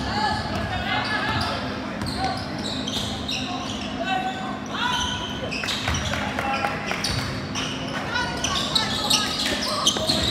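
Basketball being dribbled and bounced on an indoor court, with sneakers squeaking in many short high chirps as players run and cut. Voices of players and spectators talk and call out throughout.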